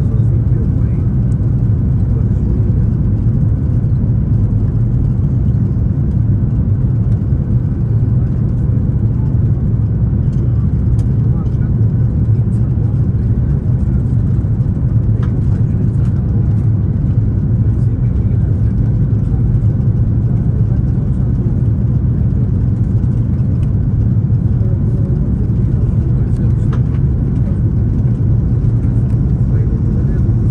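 Steady cabin noise of an Airbus A340-300 on final approach, heard from a window seat over the wing: a loud, even low rumble of engine and airflow noise, with a few faint clicks scattered through it.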